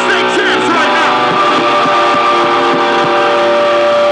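Live rock band playing loud at close range: a held note rings steadily through, with the singer's voice bending over it in the first second.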